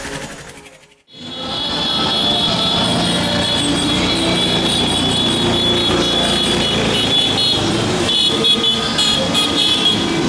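Motor scooters and small vintage cars passing in a street parade, their engines running in a steady wash of traffic noise, which starts just after a music jingle fades out about a second in.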